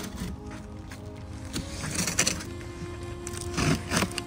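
Background music with held notes, over which a utility knife makes a few short scrapes as it slices the packing tape on a cardboard box.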